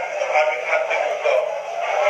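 A man talking into a handheld microphone, his amplified voice heard thin and tinny, with the low end missing, as it plays back through a screen's speaker.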